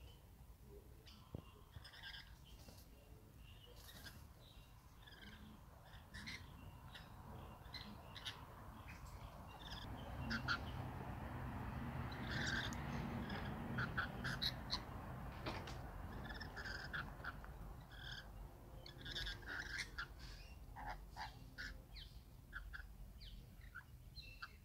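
Birds calling in many short chirps and squawks. Beneath them a low rushing noise swells from about ten seconds in and fades again a few seconds later.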